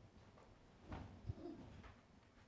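Near silence: room tone in a lecture room, with a faint, brief low sound and a soft click about a second in.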